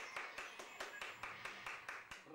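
Quick, even run of sharp hand claps, about five a second.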